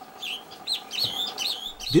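Birds chirping: a quick run of short, high, curved calls, several a second, over a faint steady hum.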